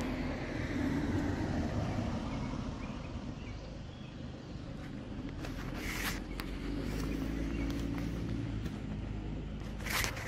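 Outdoor ambience with road traffic: a car goes by on the road at the bridge, swelling and fading, then another a few seconds later. A couple of short clicks, one about six seconds in and one near the end.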